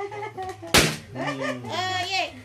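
A single sharp slap or smack a little under a second in, among children's voices and laughter.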